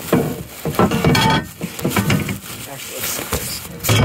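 Black plastic garbage bag packed with broken foam, rustling and crinkling loudly as it is gripped and lifted.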